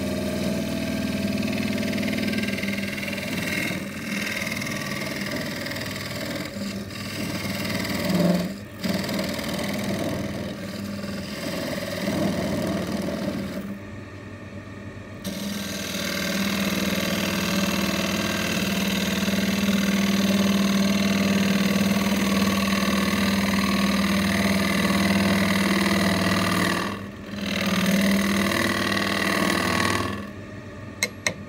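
Wood lathe running with a steady hum while a turning gouge cuts into the inside of a spinning hawthorn bowl blank, a rough scraping hiss of wood being shaved off during roughing out. The cut lets up briefly a few times.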